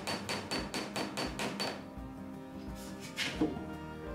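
Rapid, even light hammer taps with a faint metallic ring, about seven a second, on the copper fastenings of a wooden lapstrake canoe's planking as they are peened or clinched over a backing iron. The taps stop a little under two seconds in, and background music carries on.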